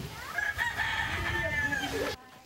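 A rooster crowing: one long call that starts about a third of a second in and holds for about a second and a half before dropping away.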